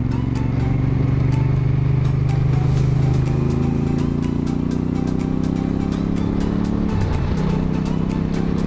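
Honda Africa Twin CRF1000L's parallel-twin engine pulling hard, its pitch rising slowly. About seven seconds in there is a short dip as it shifts up a gear, and then it pulls on at a lower pitch.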